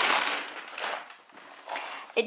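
Plastic mailer bag rustling and crinkling as it is handled, dying away about halfway through, with a brief faint high ringing tone near the end.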